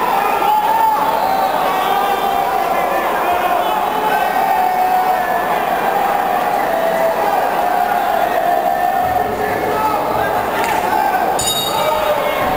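Arena crowd talking and shouting all at once, a steady din of many voices. A brief high ringing comes near the end.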